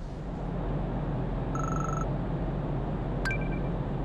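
Steady low rumble of the car ferry's engines heard from the open deck. About one and a half seconds in there is a brief high trilling beep, and a little after three seconds a sharp click with a short chirp.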